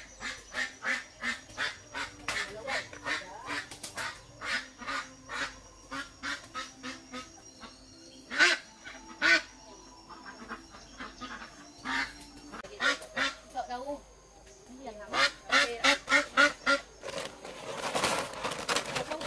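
White domestic duck quacking loudly and repeatedly, a few calls a second, as it is caught and held. The loudest calls come about eight and nine seconds in, and a fast run of calls comes near the end.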